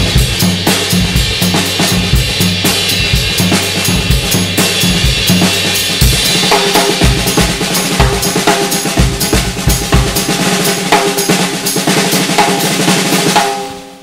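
Acoustic drum kit played in a busy groove with bass drum, snare, rimshots and cymbals, leaving the bass drum off beat one (an 'off the one' feel), over sustained low pitched backing tones. The playing stops just before the end.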